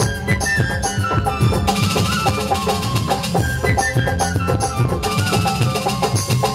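Live Nagpuri folk band music over the PA: a steady, busy drum rhythm with a melody of short notes above it, and a brighter shaker-like layer joining for about a second and a half partway through and again near the end.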